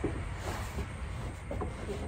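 A steady low rumble, with faint brushing and scuffing as hands move over a felt floor underlay.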